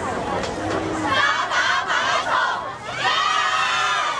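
Cheerleading squad of schoolgirls shouting a team cheer together from the huddle, in two long group shouts of many high voices.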